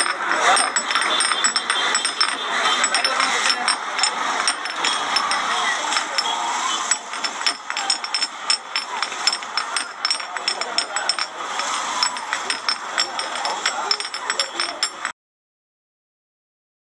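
Busy market ambience: a crowd of voices chattering, with frequent sharp clicks and clinks throughout; it cuts off suddenly about fifteen seconds in.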